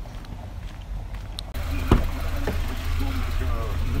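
A taxi's engine idling with a steady low hum, and one sharp click of its rear car door about two seconds in, with faint talk after it.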